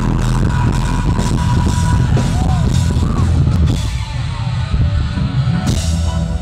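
Rock band playing live through an arena PA, recorded from within the crowd: heavy bass and drums. About four seconds in, the sound thins to mostly bass and drum hits.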